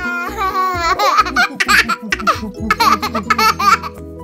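A baby laughing, starting with one long wavering squeal and going into a run of short bursts of laughter, over background music.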